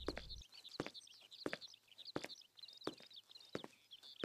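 Faint footsteps at an even walking pace, about three steps every two seconds, with birds chirping throughout.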